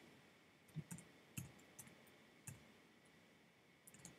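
Faint computer keyboard keystrokes: about six or seven separate light clicks at an uneven pace as a short value is typed.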